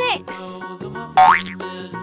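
A cartoon sound effect, a quick rising glide in pitch, about halfway through, marking the next item in a count. It plays over gentle children's background music.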